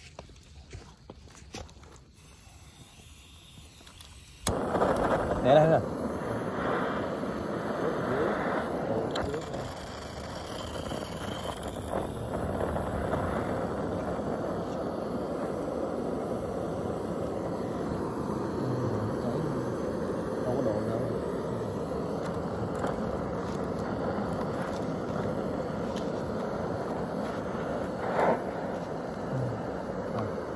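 Handheld butane gas torch clicked alight about four seconds in, then its flame hissing steadily while it heats a metal tin of water.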